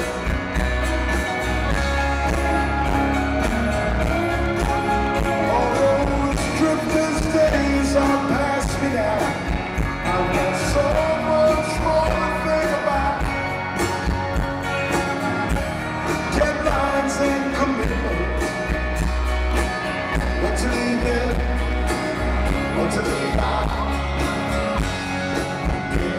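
Live rock band (guitars, keyboards, bass and drums) playing a song in a large arena, heard from among the audience, with singing over the band.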